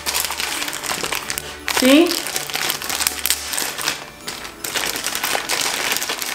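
Plastic packaging crinkling and rustling as small accessories in plastic bags are handled and unwrapped, with irregular crackles.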